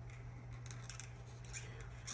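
Marker tip rubbing on paper as circles on a savings sheet are coloured in: a faint scratchy scribbling.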